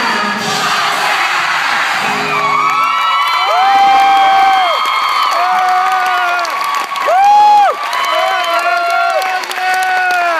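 A stage song number ends on a held chord in the first few seconds. Then the audience cheers, with many loud, high-pitched screams and whoops.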